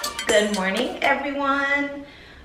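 A few quick clinks of a metal utensil against a ceramic coffee mug at the very start, followed by a drawn-out voice sliding in pitch.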